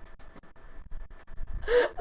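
A brief quiet pause, then a short, sharp intake of breath close to the microphone near the end.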